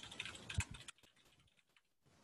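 Typing on a computer keyboard: a quick run of key clicks for just under a second, then it stops.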